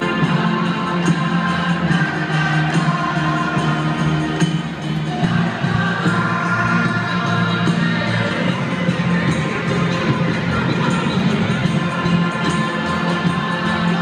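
Music playing over a football stadium's public-address system, mixed with the noise of a large crowd in the stands.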